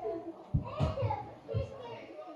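Indistinct children's voices in the background, with a few low thumps.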